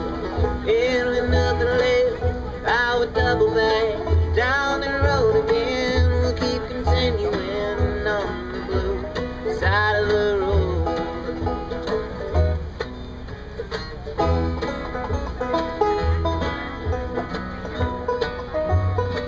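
Bluegrass band playing an instrumental break: banjo, mandolin, acoustic guitar and upright bass together, with a lead line of sliding, bending notes over steady bass notes.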